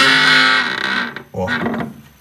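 A wooden louvred shutter being swung shut, its hinges giving one long, loud creak that dies away just over a second in.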